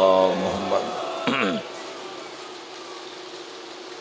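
An amplified male voice finishes a chanted phrase just after the start, a short vocal sound follows about a second in, and then a steady buzzing hum from the sound system fills the pause.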